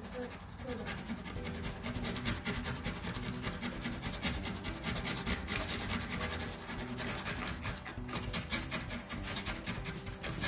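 Hand scrapers scraping old caulk and backsplash adhesive off a laminate countertop surface, in quick, repeated rasping strokes.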